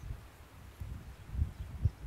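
Faint low wind rumble on the microphone, with a couple of soft thumps in the second half.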